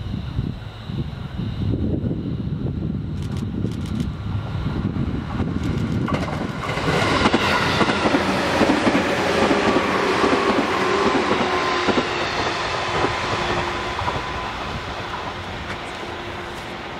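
JR 211 series electric multiple unit running past: a low wheel-on-rail rumble builds as it approaches, then from about six seconds in loud rail and wheel noise as the cars go by, with a faint falling whine. The noise eases off near the end as the train recedes.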